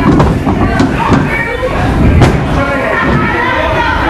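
Indistinct voices shouting, with a few sharp thuds about a second and two seconds in as wrestlers' bodies hit the ring mat.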